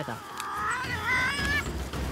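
Tasmanian devils calling while they feed together at a carcass: a wavering, high cry that climbs in pitch over about a second and a half, over a low rumble. These are the ritual calls and threats that devils use to defend their own share of the food instead of fighting.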